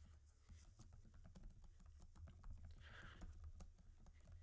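Faint typing on a computer keyboard: a quick, irregular run of light key clicks.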